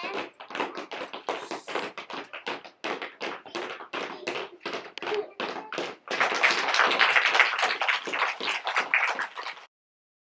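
Children tapping by hand, quick sharp taps several a second, turning at about six seconds into a louder, denser patter of many taps at once that stops suddenly near the end.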